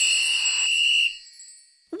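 Cartoon magic-appearance sound effect: a high shimmering chime that rings steadily, then fades out about a second in.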